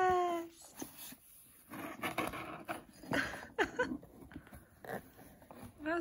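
Domestic cat meowing once at the start, a short call that rises then falls, followed by scattered rustling and scratching of a cardboard box as the cat digs into it after catnip.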